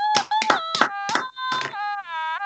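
A high note held steadily, stepping slightly down in pitch partway through, cut across by several irregular sharp claps or taps.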